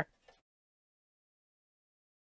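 The tail of a spoken word, then dead silence with no sound at all for the rest of the time.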